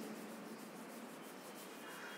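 Faint, steady background hiss with no distinct events.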